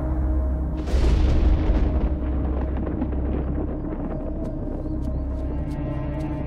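A clap of thunder about a second in, rumbling away over the next two seconds, over a dark music score with a steady low drone.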